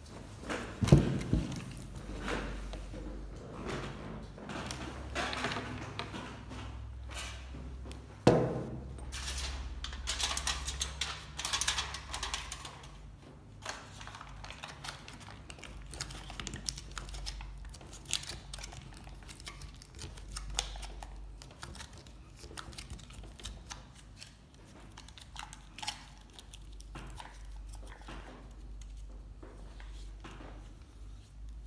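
Table-top handling of a hookah bowl: two sharp knocks, the louder about a second in and another about eight seconds in, then crinkling of aluminium foil being wrapped over the bowl, with scattered light taps and clicks.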